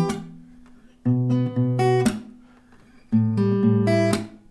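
Acoustic guitar playing two short phrases of picked single notes and bass notes, each about a second long. The first starts about a second in and the second about three seconds in, with the notes ringing out and fading between them. A short click at the very start marks earlier ringing notes being stopped.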